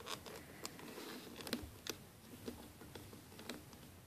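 Faint scattered clicks and light rubbing as small rubber loom bands are stretched and wrapped around the plastic pins of a Rainbow Loom.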